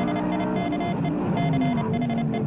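Morse code beeps keyed in quick dots and dashes, spelling out 'Strictly Come Dancing is crap', over a Lamborghini Gallardo's V10 engine running at speed, its pitch dipping and rising again.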